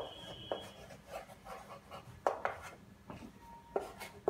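Chalk writing on a chalkboard: scratchy strokes of chalk on the board, punctuated by about four sharp taps as letters are formed.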